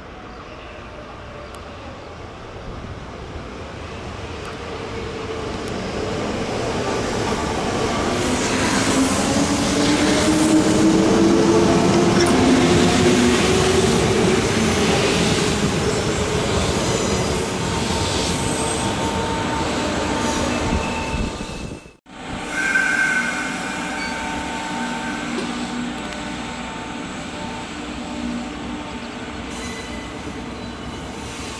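Sanyo Electric Railway 3000 series electric trains running at a station. A train's motor whine rises slowly in pitch over wheel noise on the rails, loudest about halfway through. The sound cuts off sharply later on, and a train standing at the platform follows with a steady, quieter hum.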